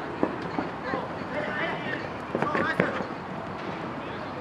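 A futsal ball being kicked several times, sharp thuds (the loudest just after the start, a cluster near the end), with players shouting to each other during play.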